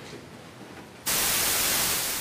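Faint room tone, then about halfway through a loud, steady hiss of white noise switches on suddenly: a courtroom white-noise masking system, switched on to keep a bench sidebar from being overheard.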